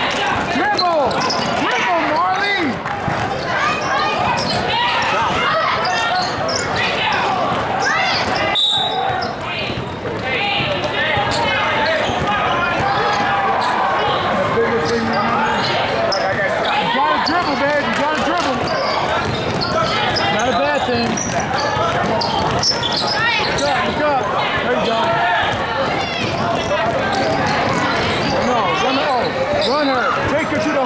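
Basketball bouncing on a hard court as players dribble, with many overlapping voices of players, coaches and spectators calling out.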